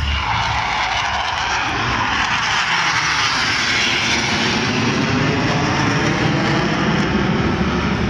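BAE Hawk jet flying past at an air show: a loud, steady rushing jet noise that grows a little louder as it goes, with a sweeping, shifting tone as the aircraft passes.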